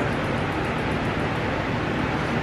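Steady background hiss of room noise, even throughout with no distinct events.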